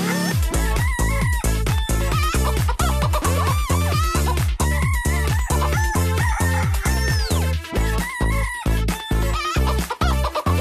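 Techno dance track with a steady, pounding kick drum that drops in at the start, overlaid with repeated chicken clucking and crowing sounds woven into the beat.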